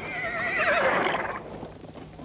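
A horse whinnying: one long wavering call that falls slightly in pitch and stops about a second and a half in.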